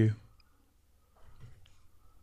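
Quiet room tone with a faint click or two from a computer mouse about halfway through, just after the last word of a man's speech ends.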